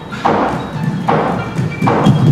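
Barefoot dancers striking and landing on a stage floor: three regular thuds about 0.8 s apart, over faint sustained music tones.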